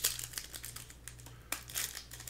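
Foil wrapper of a Donruss Optic basketball card pack crinkling as it is handled, with a louder rustle about one and a half seconds in.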